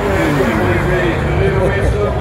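A car driving past close by, its low engine and tyre rumble under people talking.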